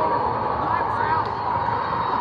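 Steady hubbub of many overlapping voices echoing through a large indoor hall full of volleyball courts, with no single voice standing out.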